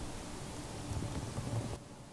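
Steady rushing background noise covering low and high pitches alike, cutting off suddenly near the end.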